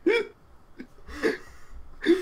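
Two short bursts of a person's laughter about a second apart, the first louder.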